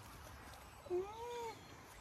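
An alpaca humming once, a short smooth call that rises and falls about a second in: the sound of an alpaca shut in and wanting to get out to its companion.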